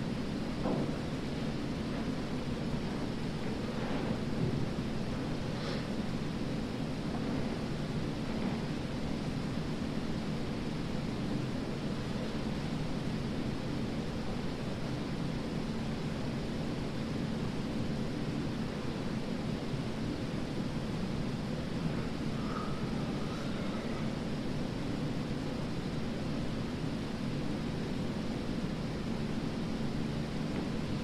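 Steady low rumbling background noise with a faint constant hum, with a few faint brief sounds scattered through it and a short wavering tone about two-thirds of the way through.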